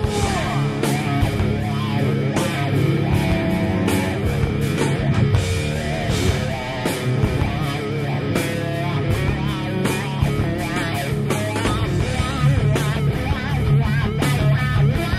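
A rock band's demo recording playing a guitar-led passage: electric guitars over bass and steady drum hits, with no lyrics heard.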